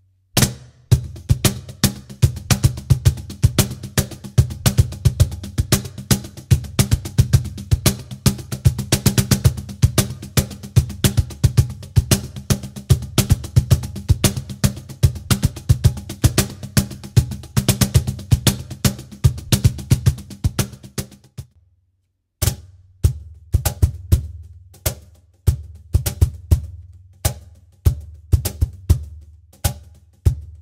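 Meinl cajon played by hand in a fast groove of deep bass tones and sharp slaps, picked up by two Shure SM57 dynamic microphones, one at the front plate and one at the back. The playing stops about 21 seconds in, then resumes with a sparser pattern.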